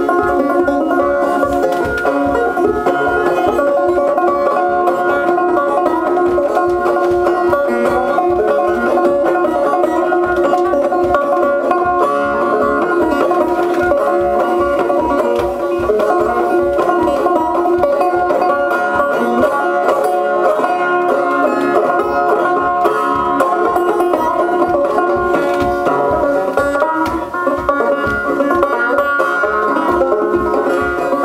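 Banjo played solo, an instrumental tune picked at a steady, even pulse with no singing.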